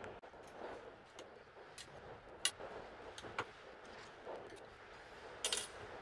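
Faint, scattered metallic clicks and taps, with a small cluster near the end, from small metal parts being handled on a small welding positioner's gear and motor housing as the motor is taken out.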